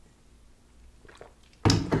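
A quiet pause with a few faint soft sounds, then, about one and a half seconds in, a woman suddenly clears her throat and her voice starts.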